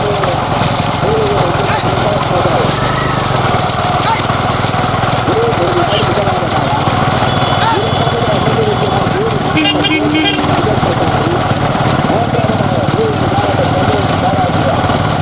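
Steady engine drone from motor vehicles running alongside racing bullock carts, with shouting voices over it. A short run of beeps comes about ten seconds in.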